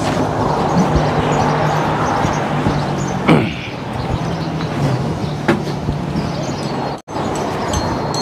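A motor vehicle engine running steadily under broad road and wind noise. The sound cuts out abruptly for an instant about seven seconds in.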